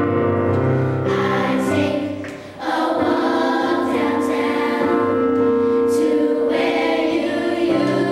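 Children's choir of fifth graders singing a slow Christmas song with sustained notes. The singing dips briefly about two and a half seconds in, between phrases.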